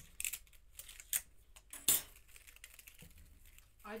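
Die-cut card being worked free of a thin metal cutting die and clear plastic plate by hand: light rustles and a few sharp clicks, the loudest about two seconds in.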